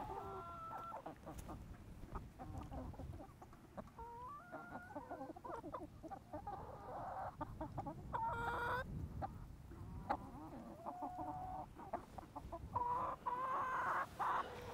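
A flock of young brown sex-link hens clucking with short, overlapping calls from several birds at once, and one louder call about eight and a half seconds in. These are pullets that have just begun laying.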